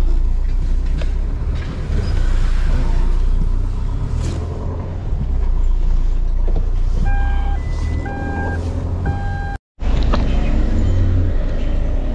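Camper van's engine running at low speed while it is manoeuvred into a parking space, heard from inside the cab. About seven seconds in, an electronic beeper sounds three times, like a reversing alarm, and the sound drops out for a moment just before ten seconds.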